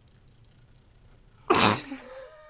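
Quiet room tone, then about one and a half seconds in a sudden loud burst from a person's voice, rough at first and trailing off in a falling tone.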